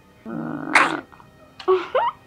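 A person crying: a drawn-out sobbing wail that breaks sharply upward in pitch, then a short rising whimper near the end.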